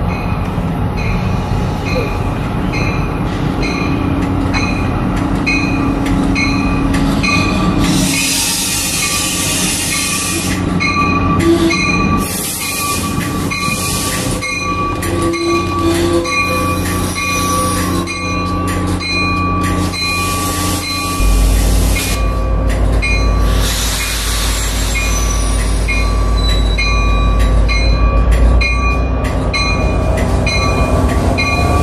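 Shoreline East commuter train, hauled by a GP40-3H diesel, arriving and braking at the station. A bell rings steadily about twice a second, a steady wheel squeal comes in about a quarter of the way through, and there are several bursts of hiss. A deep engine rumble comes up about two-thirds of the way in.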